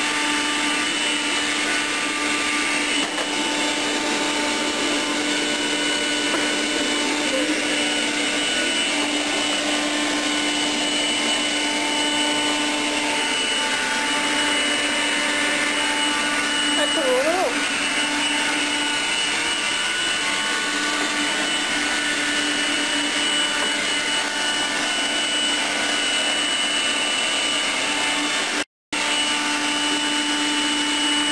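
Eureka Quick Up cordless stick vacuum running over carpet: a steady motor whine that holds level throughout. The sound drops out completely for a moment about a second before the end.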